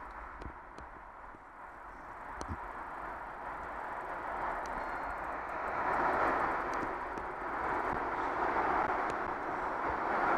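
Rolling noise of a bicycle ridden along a wet, rough path: a steady rush of tyre and wind noise that grows louder from about four seconds in, with a few sharp clicks in the first three seconds.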